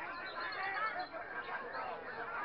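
Many caged songbirds singing and calling at once, a dense overlapping chorus of short chirps and whistles, with crowd voices underneath.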